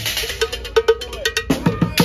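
Street bucket drummer striking upturned plastic buckets, a metal pot and a snare drum with sticks in a quick run of about five or six hits a second. Many hits ring briefly with a clear pitch, some sliding down.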